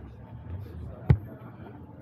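A single sharp thump about a second in, over faint background chatter from a crowd.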